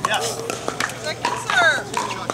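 Pickleball paddles hitting a hard plastic ball: a few sharp pops during a fast exchange at the net, with voices of players and onlookers.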